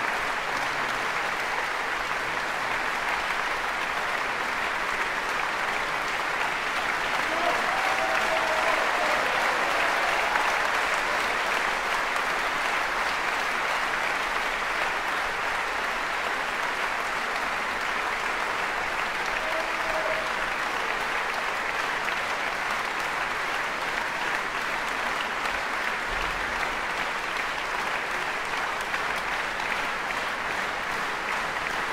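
Large audience applauding steadily, swelling a little about a third of the way in.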